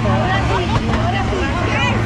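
Raft riders' voices talking over a steady low hum on the river rapids ride.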